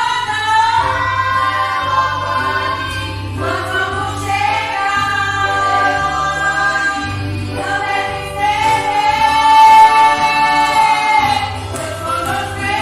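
A small church choir of mixed voices, with women's voices leading, singing a hymn from printed sheets in long held notes; the loudest is a long held note about three-quarters of the way through.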